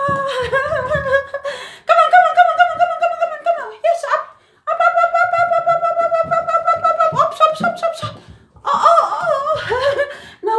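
A woman's voice making long, drawn-out high calls, each held for two to three seconds with short breaks between. The pitch wavers more in the last calls near the end.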